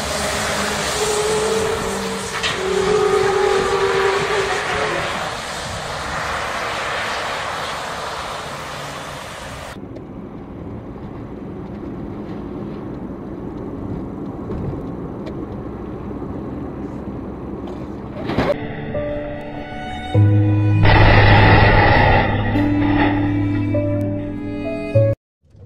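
Road and traffic noise from dashcam footage, with a sharp bang about eighteen seconds in, followed by background music with sustained tones over the last few seconds.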